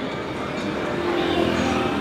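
Steady city street traffic noise, with a vehicle engine running close by.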